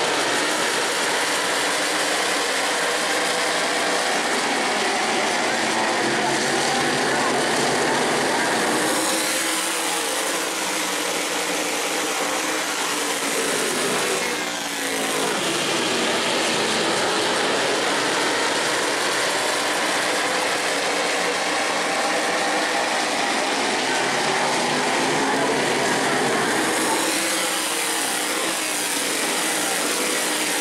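Tour-Type modified race cars running at racing speed around a short oval, their V8 engines blending into a steady, loud drone, with one car passing close about halfway through, its engine pitch sweeping down as it goes by.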